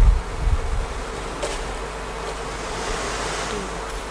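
A steady low hum with a faint buzzing tone over an even hiss of room noise, with a few low thumps in the first half second.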